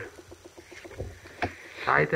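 Pokémon trading cards handled in the hand as the top card is slid aside to reveal the next, with two light clicks about a second in and half a second later.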